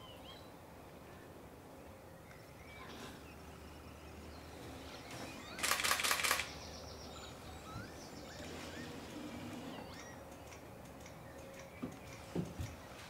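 A camera shutter firing a rapid burst of about ten clicks in under a second, about halfway through. Faint high bird chirps come and go underneath.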